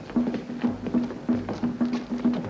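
Drums beating a steady, rhythmic pattern over a repeated low note: island war drums.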